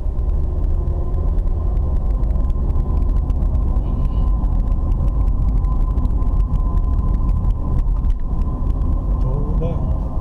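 Car driving in slow traffic, heard from inside the cabin: a steady low rumble of engine and road noise, with a faint thin steady whine running through it.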